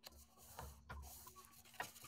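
Faint handling of a paper card panel and tape on a cutting mat, with a low rumble and a couple of light clicks.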